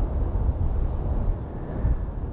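Wind buffeting the microphone: a low, fluctuating rumble with a faint hiss above it.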